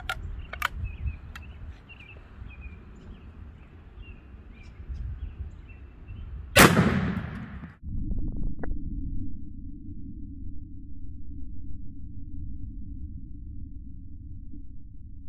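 Single 12-gauge shotgun shot, firing a Kaviar frangible slug, about six and a half seconds in, with a short echo; a few sharp clicks of gun handling come before it. About a second after the shot the sound cuts to a steady low rumble.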